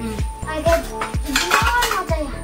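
Stainless steel plates and cutlery clinking and clattering as they are handled during dish washing, busiest in the second half. Background music with a steady beat plays throughout.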